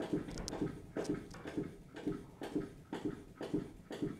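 Barber chair's hydraulic foot pump being pumped to raise the chair: a run of soft, even knocks, about three a second.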